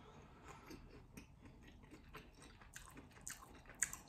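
Faint chewing of boneless chicken wings: soft, scattered mouth clicks, with a couple of sharper clicks near the end.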